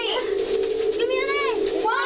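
Children's voices making wordless, drawn-out sounds that swoop up and down in pitch about once a second, over a steady held hum.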